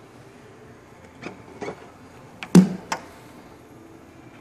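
Trunk lid of a 2013 Volkswagen Beetle convertible being unlatched and opened: a couple of light clicks, then a louder clunk about two and a half seconds in with a few sharp clicks around it.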